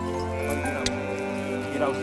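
Background music with long held notes, with sheep bleating over it: a call about two-thirds of a second in and another near the end. A short click a little under a second in.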